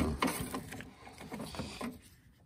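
Hands working at a side repeater wiring loom and plastic connector: scattered small plastic clicks and rustling, fading off toward the end.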